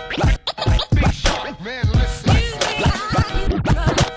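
Hip hop music with record scratching: quick back-and-forth pitch sweeps cut over the beat.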